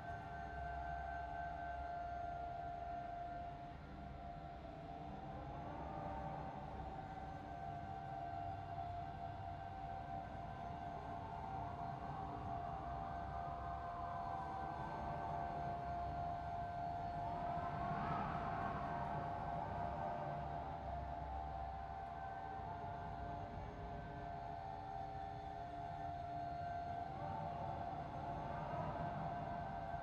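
Eerie ambient drone of steady held tones, with wavering siren-like tones that swell and fade several times, loudest about eighteen seconds in.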